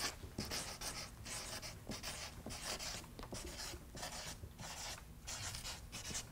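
Felt-tip marker writing on a paper easel pad: a faint run of short scratchy strokes with brief gaps between them as words are lettered.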